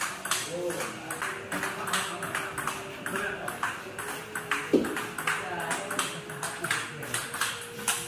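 Table tennis rally of backhand drives: the ball clicks off the bats and the table in a quick, even rhythm of a few hits a second, with one louder knock about halfway through.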